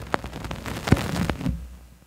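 Vinyl record surface noise after the song has ended: the stylus runs on in the inner run-out groove, giving scattered crackles and pops over a low rumble. It fades out near the end.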